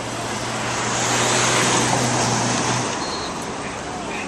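A motor vehicle passing close by in city street traffic: a steady low engine hum and tyre noise swell to a peak about a second and a half in and fade away by about three seconds.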